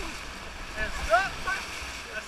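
Whitewater rapids rushing and splashing against an inflatable raft, with short shouted voices about a second in.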